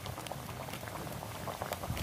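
Potato curry simmering in an iron kadai over a wood fire, bubbling with a steady fine crackle.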